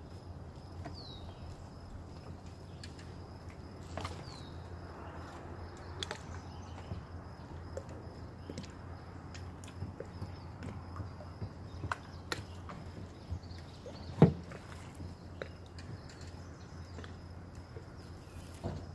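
Scattered knocks and bumps of a small homemade boat being boarded as a person steps down into it and settles in, with one loud thump about fourteen seconds in, over a steady low outdoor background.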